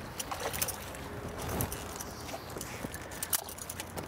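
Hooked snook thrashing and splashing at the surface beside the boat: irregular short splashes over a steady low rumble.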